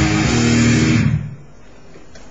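Distorted electric guitar, a Yamaha Pacifica, playing a heavy metal riff that stops abruptly about a second in, leaving only faint noise.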